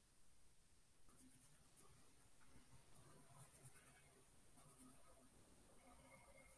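Near silence, with a few faint ticks of a stylus on a tablet screen a little before the middle.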